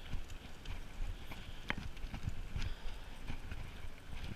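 Mountain bike rolling along a tarmac path, heard from a camera on the rider: a low rumble with irregular light knocks and rattles as the bike goes over the surface.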